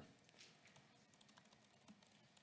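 Faint typing on a laptop keyboard: a scattering of light, irregular key clicks.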